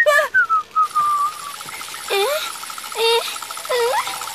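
Cartoon sound effects: a falling whistle-like tone in the first second, then a steady, rapidly pulsing high tone like a wheel spinning in place. Over it come three short, strained vocal grunts from a girl trying to push her wheelchair free.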